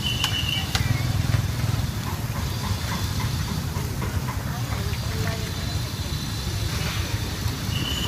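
Metal tongs clicking against a wire grill rack as food is turned, over a steady low rumble.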